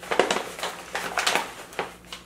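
Plastic bag rustling and crinkling in several quick bursts as hands work inside it.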